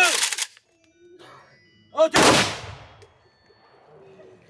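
A man's shouted command, then about two seconds in a single volley of rifle fire from an honour guard firing a funeral salute, its crack trailing off in an echo for about a second.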